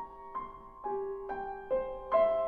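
Grand piano playing a quiet solo passage between sung phrases: a slow line of single notes, about two a second, each ringing on as the next is struck.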